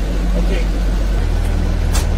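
School bus engine running, heard from inside the cab: a steady low drone whose tone shifts about a second in.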